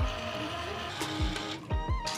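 Background music: a held melody over deep bass drum thumps that fall in pitch, a few to the second.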